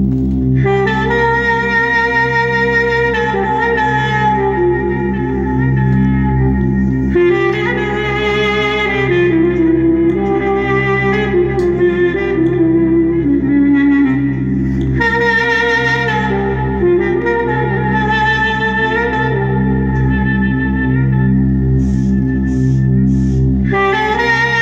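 Clarinet playing a hicaz taksim, a free improvisation in makam hicaz, in long ornamented phrases with held notes and short pauses between them. Underneath runs a steady sustained backing drone.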